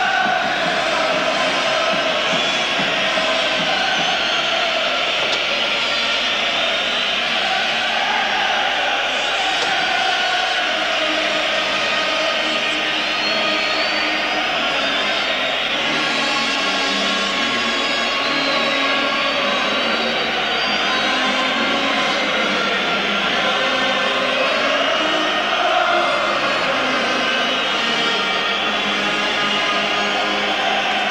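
A national anthem played by a marching band in a packed football stadium, with the crowd singing and chanting over it.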